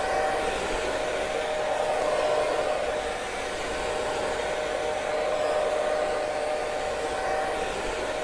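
Hand-held hair dryer running steadily, a rush of air with a constant whine, as it blow-dries thick natural hair.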